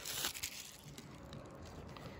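Faint handling sounds from a plastic prescription pill bottle and its cap: a few light clicks in the first half second, then only quiet room tone.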